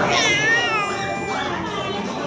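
An infant's high-pitched squeal, lasting about a second and a half, wavering and falling slightly in pitch.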